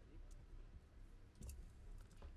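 Near silence with a low hum and a few faint, short clicks, the clearest about one and a half seconds in.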